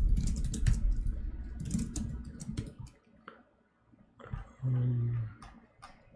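Typing on a computer keyboard: a run of quick keystrokes over a low rumble for about the first three seconds, then a few scattered key clicks. About five seconds in there is a short low hum.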